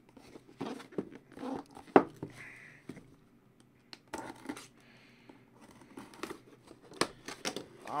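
Cardboard jersey box being handled and turned over, with scattered rustling, scraping and tearing of cardboard and plastic wrap, and a sharp knock about two seconds in and another near the end.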